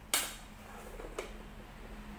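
Metal loaf tins handled on a stainless-steel worktable: a sharp metallic clank just after the start and a lighter knock about a second later, over a steady low hum.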